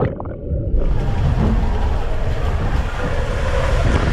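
Rushing water and a low rumble as the rider and body-worn camera slide down an enclosed water slide tube. It sounds muffled for under a second at the start, then opens into a full rushing noise.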